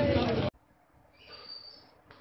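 A man's speech cut off abruptly half a second in, then near silence with a faint, thin, steady high tone for the last second or so.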